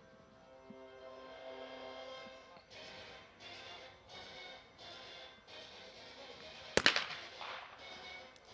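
A single shotgun shot at a trap clay target about seven seconds in: one sharp, loud report with a short echo trailing after it. Faint steady background music runs underneath.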